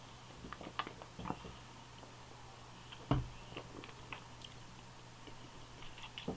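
Quiet mouth noises from tasting a mouthful of lager: small lip smacks and tongue clicks scattered through, with one soft thump about three seconds in.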